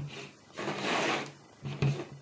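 A rubbing, scraping sound for about a second as a power cable is moved across a tabletop, then a short knock near the end.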